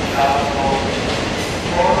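Train running noise at a station, a steady rumble and hiss, with a voice that comes and goes over it.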